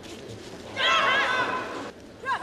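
A loud, high-pitched shout, wavering in pitch. It starts just before the middle and lasts about a second.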